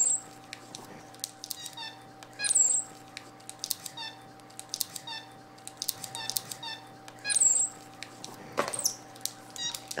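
Capuchin monkey giving a run of short high squeaks, about two a second, with three louder high chirps that drop in pitch, at the start, a couple of seconds in and later on. A faint steady hum runs underneath.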